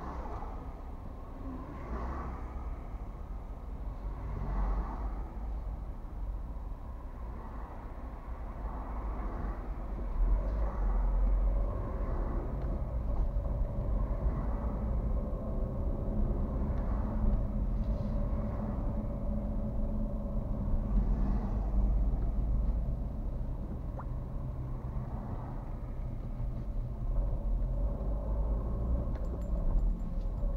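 Low engine and tyre rumble heard inside a car's cabin as it moves off in city traffic and drives along. It grows louder about a third of the way in, with faint swells from passing traffic.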